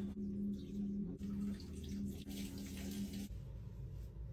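Water poured from a glass pitcher into a plant pot, a steady stream that stops a little past three seconds in.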